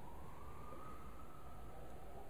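Faint distant siren: one slow wail that rises in pitch over about a second and then sinks gently, over a steady low room hum.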